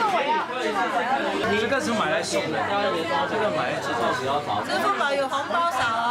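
Several people talking over one another in lively, overlapping chatter.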